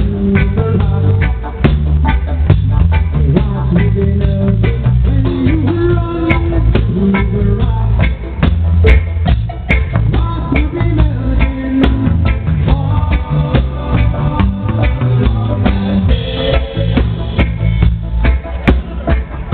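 A live band playing with electric guitars, drums and hand percussion (congas and timbales), heard loud and close to the stage, with a steady beat and a heavy low end.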